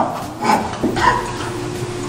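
A man laughing in short, high yelps.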